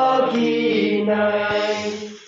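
A group of young men singing a hymn together, one phrase of long held notes that breaks off near the end.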